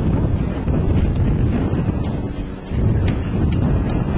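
Wind buffeting the microphone: a loud, low, rumbling roar that dips briefly about two and a half seconds in.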